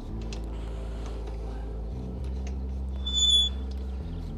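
Stainless-steel kayak holder being tilted on its knob-loosened pivot: light clicks of handling, then about three seconds in a short, high-pitched metallic squeak. A steady low hum runs underneath.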